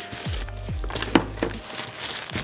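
Background music, with handling noise over it: a soft protective wrap crinkling and a few sharp clicks as a small drone is unwrapped. The loudest click comes a little past the middle.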